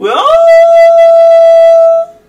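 A man's voice toning: one loud, wordless sung note that swoops up at the start and is then held on a single steady pitch, stopping at the very end.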